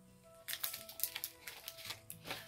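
Small clear plastic packaging bag crinkling and rustling as it is handled, a run of short crackles starting about half a second in, over quiet background music.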